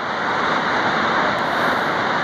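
Steady rushing noise of a waterfall, an even, unbroken hiss.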